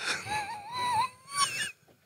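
A man's high, wavering whimper-like vocal sound that lasts about a second and a half and rises in pitch near the end.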